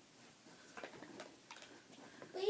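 Near silence with a few faint ticks and clicks, from plastic model horses being handled.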